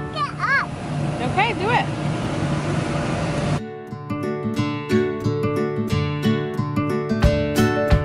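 Children's excited high-pitched calls and squeals over a noisy background of play for about three and a half seconds. Then acoustic guitar background music cuts back in and plays on.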